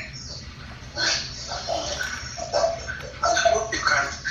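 Indistinct voice sounds in short broken phrases, starting about a second in, with no clear words.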